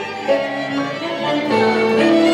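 A tango orchestra playing, with violins carrying held melody notes over the ensemble.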